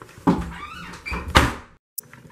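A wooden interior door being handled and shut, with a brief squeak and a few knocks, the loudest knock about a second and a half in.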